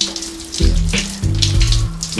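Shower spray hissing steadily from a showerhead, under background music with a pulsing bass line, held notes and a regular beat.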